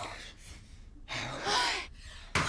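A person's brief, breathy gasp a little past the first second, after the fading tail of another breathy vocal sound at the very start.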